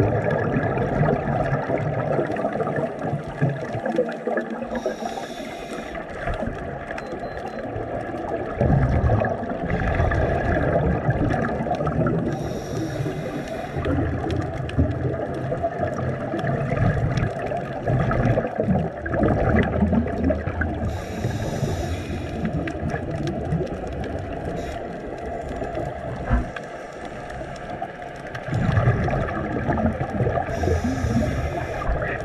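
Scuba regulator breathing heard through an underwater camera: a short hiss returning about every eight or nine seconds, with gurgling, rumbling exhaled bubbles between.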